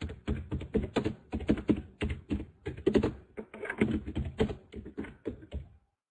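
Typing on a computer keyboard: a quick, uneven run of key clicks that stops shortly before the end.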